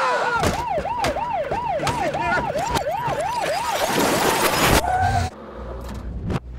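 A siren yelping, its pitch swinging up and down about four times a second, over a dense wash of noise and sharp hits; it cuts off suddenly near the end.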